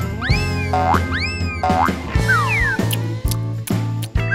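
Cartoon sound effects over light background music: two quick whistle-like glides that rise and fall back in the first two seconds, then two falling glides a little after halfway.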